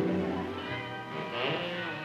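Background score: held notes, with a brief sliding pitch about a second in.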